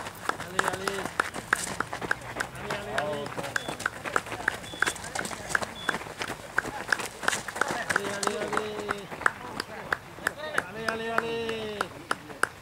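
Footsteps of runners jogging past, a steady train of foot strikes a few per second, with voices calling out now and then and a few short high beeps.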